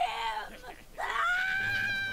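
A high-pitched cartoon voice screaming: it rises sharply about a second in and then holds one long, steady shriek.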